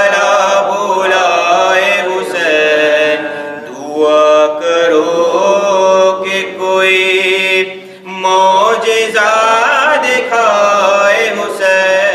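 Solo male voice chanting an Urdu devotional poem (munajat) without accompaniment, drawing out long notes with ornamented turns in pitch and short pauses for breath.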